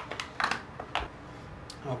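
Several light clicks and taps of a plastic action figure being handled and stood on a tabletop, mostly in the first second with one more near the end.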